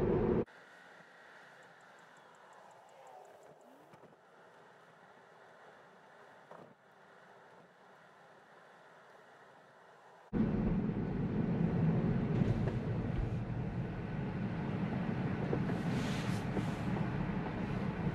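Near silence for about the first ten seconds, then a sudden switch to a steady low road-and-tyre rumble heard inside the cabin of a Tesla electric car on the move.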